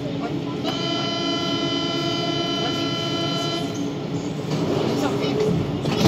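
Siemens/Matra VAL 208 metro standing at a station: a steady, buzzy warning tone, typical of the door-closing signal, starts about a second in and lasts about three seconds over the train's steady hum. Louder mechanical noise builds near the end.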